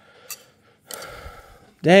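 A light click, then a soft, breathy exhale lasting just under a second.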